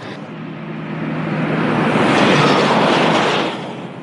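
A road vehicle driving past, its engine and road noise building for about two seconds, peaking around two and a half seconds in, then fading away.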